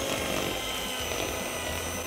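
Electric hand mixer running steadily at high speed, its twin beaters creaming room-temperature butter in a mixing bowl until it turns fluffy.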